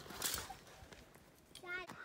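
Brief scuffing and rustling noises at the start, then faint outdoor quiet, and a short vocal exclamation just before the end.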